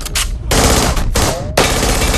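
Rapid gunfire in an action film's soundtrack: dense, closely spaced shots, loud from about half a second in, with a short break about a second and a half in.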